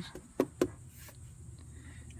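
Two light, sharp clicks about a fifth of a second apart, under a second in, over a faint steady high hiss.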